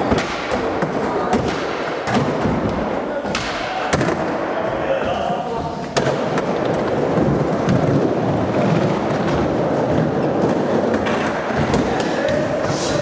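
Skateboards rolling on a concrete bowl, with several sharp clacks and thuds of boards hitting the surface, over people chattering in the background.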